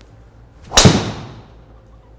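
Ping G400 Max titanium driver head striking a golf ball off a tee: one sharp crack a little under a second in, ringing down over about half a second.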